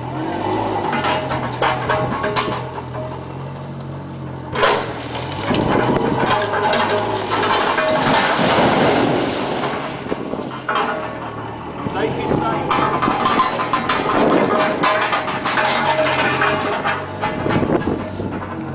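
A Linde forklift's LPG engine runs throughout as it pushes on a cracked brick wall. A sharp crash comes about four and a half seconds in, followed by several seconds of noise from the brickwork coming down.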